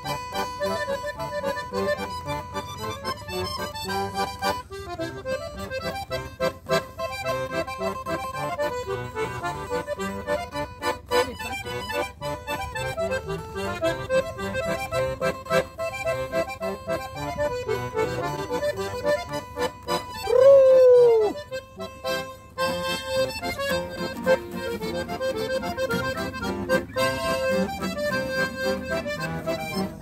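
Chromatic button accordion playing a lively melody over a strummed acoustic guitar, with no singing. About two-thirds of the way through, a single loud sliding cry rises and falls for about a second over the music.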